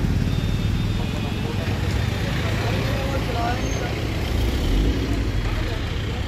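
Motor vehicles running close by: a motorcycle engine as it rides past early on, then an ambulance van driving, with engine noise swelling about five seconds in. Voices are in the background.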